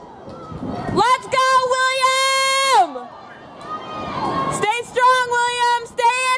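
A spectator yelling encouragement at a runner in a mile race: two long, high-pitched shouts, each held at one pitch, the first lasting nearly two seconds and dropping off at its end, the second shorter near the end.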